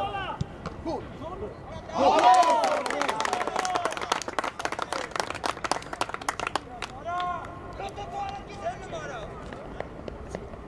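Men shouting on a football pitch, loudest about two seconds in, with a run of quick hand claps for several seconds and another shout near the end.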